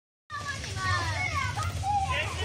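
Children's voices shouting and calling out during a team game, high-pitched and gliding up and down, over a steady low rumble. The sound starts abruptly just after the beginning.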